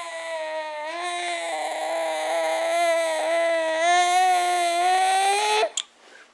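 Six-month-old baby's long, frustrated groan: one steady held vocal tone that wavers only slightly in pitch and cuts off near the end.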